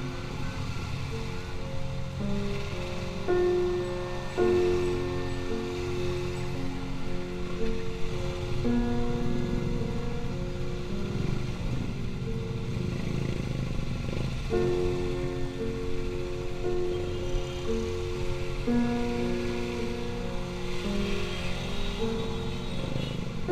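Background music: a melody of held notes that change every half second or so, over a steady low band.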